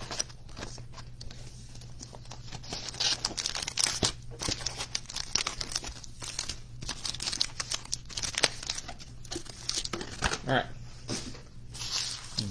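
Plastic shrink wrap tearing and crinkling as a trading-card box is opened, with irregular crackles and small clicks as the cardboard and the wrapped packs inside are handled.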